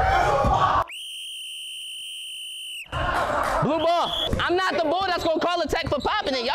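A steady high tone, about two seconds long and edited into the soundtrack so that all other sound drops out beneath it, followed by loud excited shouting and yelling from the players and onlookers.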